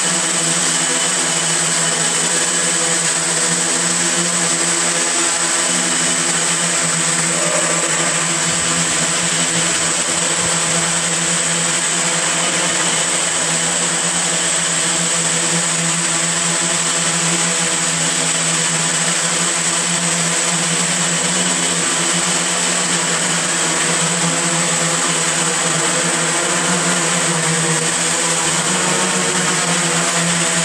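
Multirotor camera drone flying, its electric motors and propellers making a steady, loud buzz with a stack of tones whose pitch wavers slightly as it manoeuvres.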